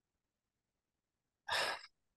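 Silence, then near the end one short, breathy sigh from a man, about a third of a second long, just before he answers.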